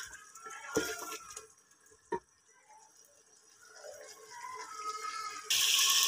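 A spoon knocks twice against an aluminium cooking pot of mutton pieces. Near the end, a loud, steady sizzle starts suddenly: the mutton frying in the oil it has started to release.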